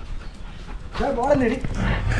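Dog giving one short wavering whine about a second in, picked up close by the GoPro strapped to its own back, with rustling from the harness and movement underneath.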